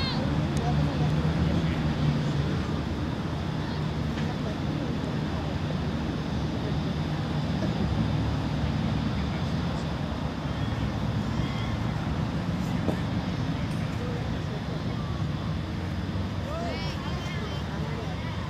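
Steady low rumbling background noise with faint distant voices.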